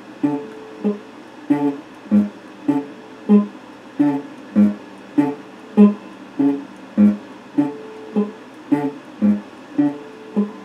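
Electric guitar being picked in a steady, repeating pattern, with a note or short chord plucked about every 0.6 seconds.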